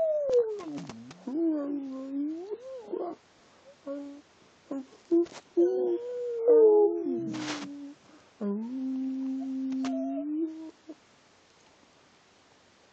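A dog "talking": drawn-out, pitch-bending moans and yowls in several bouts, sliding up and down in pitch, with one longer steady-pitched note near the end before it goes quiet.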